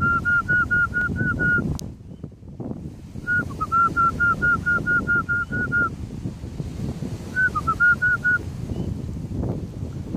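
Zebra dove calling: three runs of quick, clipped cooing notes at about five a second, each run opening with a couple of lower notes. The first run ends a couple of seconds in, the second is the longest, and the third is short, about three-quarters of the way through. A steady low rumble of background noise runs underneath.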